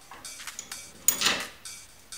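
Light clicks of a metal mounting plate and its screws being fitted against the X-axis carriage of a CTC Prusa i3 Pro B 3D printer, with one sharper metallic clink about a second in.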